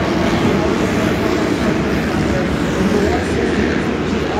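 Several supercross dirt bike engines revving and running around a dirt track inside a domed stadium, a steady loud engine noise with voices mixed in.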